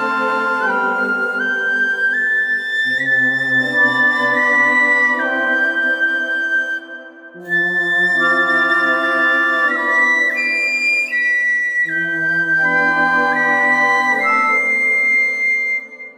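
Shinobue, a Japanese bamboo transverse flute, playing a slow melody of long held notes that climbs step by step, over sustained accompanying chords. The music breaks off briefly about seven seconds in, then the melody resumes.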